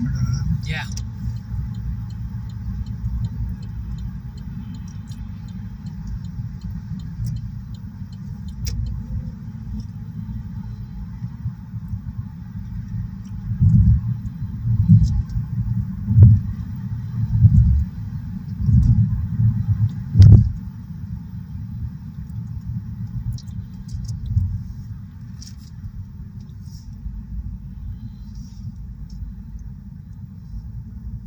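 Steady low road rumble and tyre noise inside a car cruising at highway speed. About halfway through comes a run of louder low thumps and surges for several seconds before it settles back to the steady rumble.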